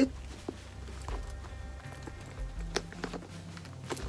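Background music with a steady low bass line, over a few faint clicks and rustles as a stuffed caviar-leather clutch is pressed shut and its metal turn lock fastened.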